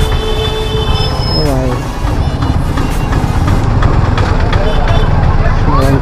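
Motorcycle engine running steadily at low speed in town traffic, with a low rumble of surrounding traffic. A steady high tone sounds during the first second or so, and brief voices pass.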